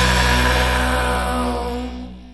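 The last held chord of a Japanese punk/hardcore song, played on distorted electric guitar and bass with cymbal wash. It rings on steadily and fades out as the track ends.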